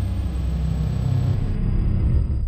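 A steady, loud, deep rumble with almost nothing higher in it.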